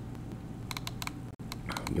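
Computer keyboard keys tapped in short quick runs, one about a second in and another near the end, over a low steady hum.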